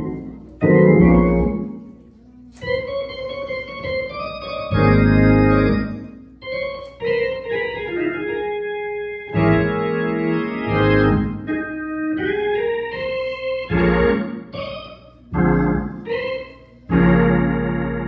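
Organ playing held chords that start and stop, with quicker runs between them, as the introduction to a choir song.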